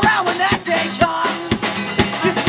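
Live folk-punk band playing: acoustic guitar, trumpet and a drum kit, the drums hitting about twice a second.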